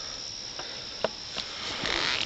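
Steady high-pitched chorus of crickets, with a few sharp snaps of footsteps in dry leaf litter, the clearest about a second in, and a louder rustle of brushing through vegetation near the end.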